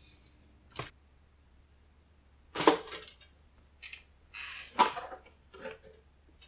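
A two-slice toaster being handled, with a skewer worked at its slots: a series of short clicks and clatters, the loudest about two and a half seconds in.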